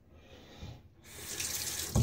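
Bathroom sink tap turned on about a second in, water running into the basin and growing louder.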